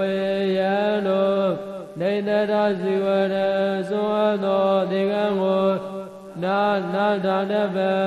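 A single voice chanting Pali text in a slow, melodic recitation, holding long steady notes. The phrases break briefly about two seconds and six seconds in.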